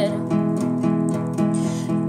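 Acoustic guitar strumming chords as the accompaniment to a song.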